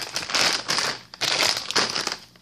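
Plastic candy bags crinkling and rustling as they are handled and pushed aside, in two stretches with a short lull about a second in.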